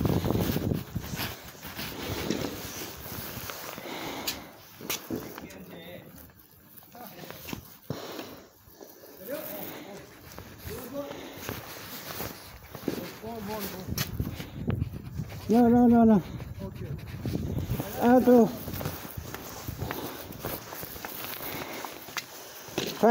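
Jacket fabric rubbing and scraping against the microphone, then two loud shouted calls from a person, about two and a half seconds apart, late in the stretch.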